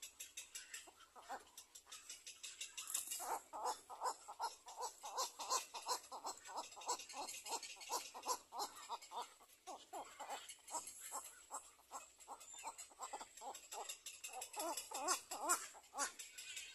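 Little black cormorant calling at the nest in a long run of short, repeated notes, about three to four a second. The calls slacken around ten seconds in and grow more insistent again near the end.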